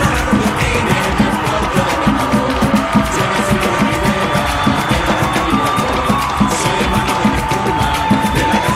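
Music with a fast, steady beat.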